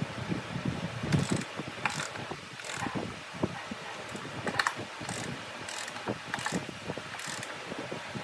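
Hand socket ratchet tightening a bolt through pine timber, its pawl clicking in repeated short runs as the handle is swung back and forth.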